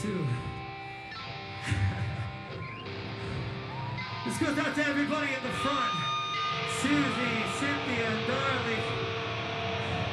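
Electric guitar holding ringing notes from the stage's speakers, with a crowd shouting and cheering over it near the middle.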